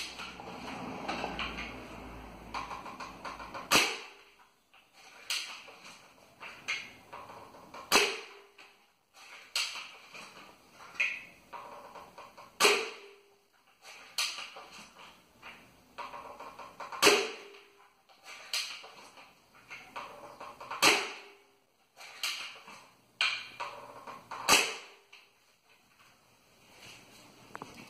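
Homemade spring-piston airsoft sniper rifle, built of PS plastic with a PVC barrel, firing six shots about four seconds apart, each a sharp snap, with lighter clicks between shots.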